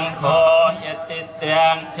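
Theravada Buddhist monks chanting Pali verses in unison, a steady recitation with a short pause about a second in.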